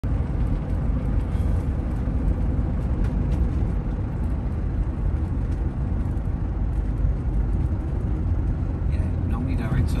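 Engine and tyre noise of a camper van heard from inside its cab while driving, a steady low rumble. A voice starts to speak near the end.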